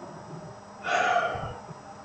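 A man's single loud sigh, one breath of air through the mouth lasting about half a second, starting about a second in.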